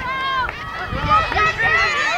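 High-pitched girls' voices calling and shouting across the field as lacrosse play goes on, with one call at the start and several overlapping calls from about a second in.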